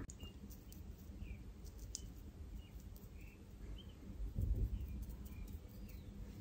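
Quiet room tone with faint, short bird chirps in the background, scattered about a second apart, and a soft low rustle about four and a half seconds in.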